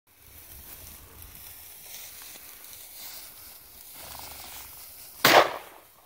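Faint rustling in dry grass, then a single loud shotgun shot from a Browning Citori over-and-under about five seconds in, with a short echoing tail.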